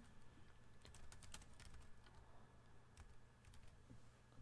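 Faint typing on a computer keyboard: soft, irregular key clicks over a low, steady hum.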